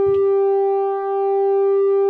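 A synthesizer oscillator holding one square/pulse-wave note, its tone shifting as an LFO sweeps the pulse width, with a brief dip about a second in. The LFO is bipolar and drives the PWM input below the zero-to-five-volt range the oscillator expects, so the sound keeps disappearing. A soft knock comes near the start.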